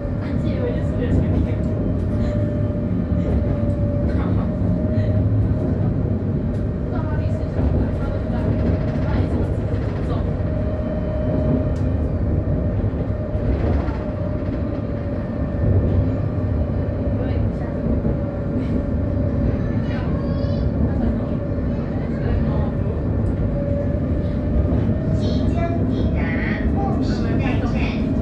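Light rail tram running along its line, heard from inside the passenger car: a steady rumble of wheels and running gear with a steady whine held throughout. Faint passenger voices sit in the background.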